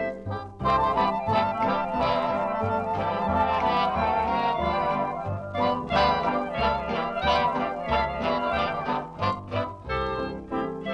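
1938 swing dance band record playing an instrumental passage. Held, wavering chords sound over a steady pulsing bass beat, and the full ensemble swells in about half a second in.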